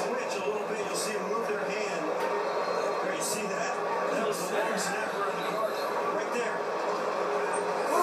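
Football game broadcast playing from a television: indistinct announcer talk over a steady background noise.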